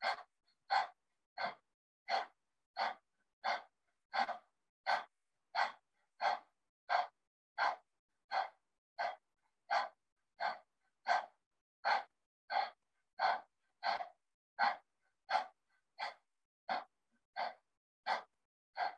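Kapalabhati breathing: a steady run of short, sharp exhales through the nose, about three every two seconds, with silence between the puffs.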